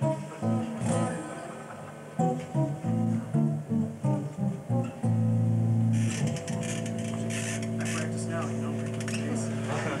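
Six-string electric bass played solo: a run of separate plucked notes for about five seconds, then a long held low note with higher notes ringing over it.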